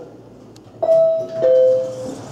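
Elevator arrival chime: two descending tones, a higher note a little under a second in and a lower note half a second later that rings on, sounding as the car arrives and its doors open.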